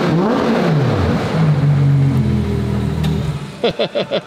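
Ferrari Monza SP2's 6.5-litre V12 being revved: the pitch rises and falls over the first second, then settles to a steady run that stops abruptly a little over three seconds in.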